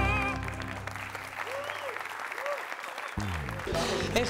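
A held operatic-style sung note with wide vibrato ends just after the start and gives way to audience applause. About three seconds in, a falling tone sweeps down into music.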